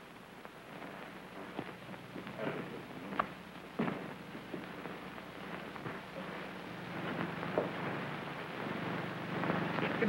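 Steady hiss and crackle of an early sound-film soundtrack, with a few scattered knocks: footsteps of people walking across a hard hall floor.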